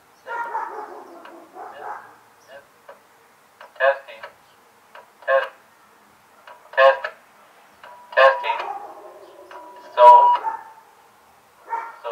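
A man's voice coming out of a truck-mounted CB radio's PA speaker: thin and tinny, in short loud bursts a second or so apart. In the last few seconds a steady high ringing tone joins in and peaks about ten seconds in, the PA feeding back as its volume is turned up.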